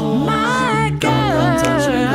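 An a cappella vocal group of solo voice and SATB choir singing. About a second in, the lead voice sings a wavering run that falls in pitch on "girl", over the choir's backing and a steady low bass line.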